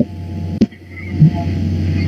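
A low rumble that builds steadily louder, over a steady low hum, with sharp clicks at the start and just over half a second in.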